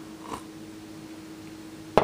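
A person sipping a thick smoothie from a cup, a soft slurp shortly after the start, over a steady low hum, then a single sharp knock just before the end.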